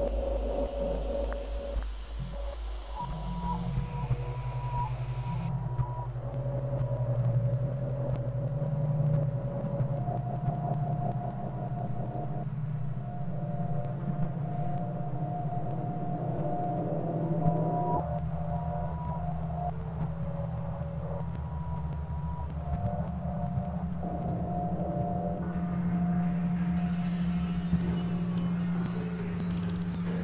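Experimental glitch electronic music: a low, pulsing drone with thin steady tones above it that start and stop abruptly, changing every few seconds.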